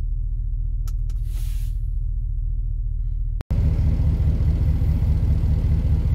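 Ram 1500 pickup's engine idling, a steady low rumble heard from inside the cab, with a couple of light clicks and a brief hiss about a second in. After a cut a little past halfway, the idle is louder and heavier, heard from behind the truck.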